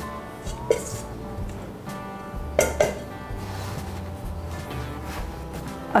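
Background music, over a few knocks of a stainless steel mixing bowl against a wooden cutting board as dough is turned out of it: one about a second in and two close together near the middle.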